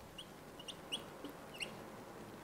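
Four faint, short, high-pitched chirps over quiet room tone.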